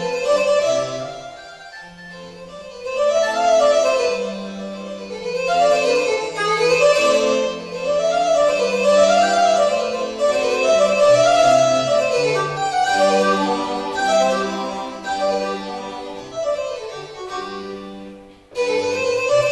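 Roland digital accordion playing a fast classical-style piece: quick running melodic lines over a moving bass line, softer for a moment about a second in, then building again.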